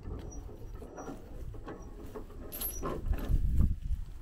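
Irregular light clinks and knocks of steel load chain and a ratchet binder being handled while a bulldozer is chained down on a trailer, with a few dull thuds near the end.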